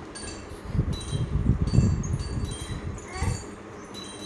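High, tinkling chime notes from a children's toy, sounding again and again in short runs, with low thumps of toys being handled on the floor.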